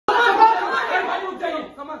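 Several people talking loudly over one another at once.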